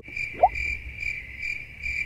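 Cricket chirping sound effect: a steady high chirping trill that pulses a couple of times a second, the stock comedy cue for an awkward silence. A short rising whistle sounds about half a second in.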